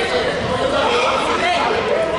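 Several people talking at once, an indistinct chatter of overlapping voices in a large gym.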